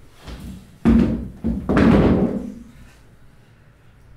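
Two heavy thumps, the first sudden and short, the second drawn out and dying away over about a second.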